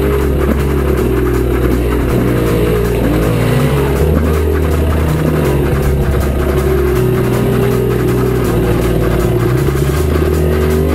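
Enduro dirt bike engine revving up and down as it climbs a rocky trail, mixed with background music that has a low bass line changing every second or two.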